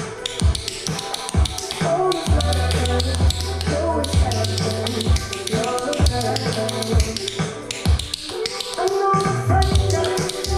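A pop song recording playing with a steady beat, with tap-shoe taps on a hard floor over it.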